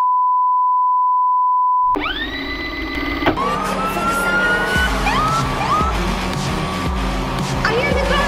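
A steady, high-pitched test tone over TV colour bars for about two seconds, then a rising sweep, and from about three seconds in club music with a heavy beat and sliding, rising tones on top.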